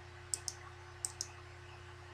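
Two pairs of computer mouse clicks, each pair a quick click-click and the pairs about three quarters of a second apart, over a faint steady electrical hum.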